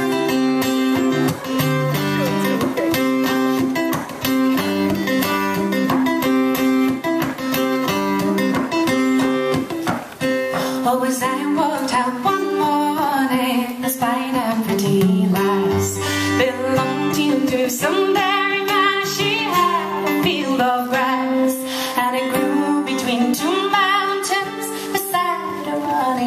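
Live acoustic folk music: an acoustic guitar plays on its own for about the first ten seconds, then a woman's voice comes in singing over the guitar.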